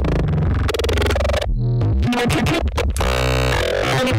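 Distorted electronic bass sound built by resampling and distorting a recording of a man screaming, played back as a chopped run of changing tones with a heavy low end and a sliding pitch about halfway through.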